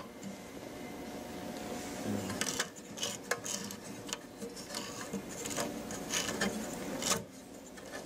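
Hands handling a fiber optic illuminator's metal case and turning its intensity knob: scattered rubbing and small clicks, the sharpest near the middle and about seven seconds in, over a steady faint hum.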